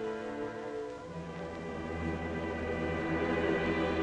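Orchestral film score with strings holding sustained notes; about a second in, low notes come in beneath and the music swells.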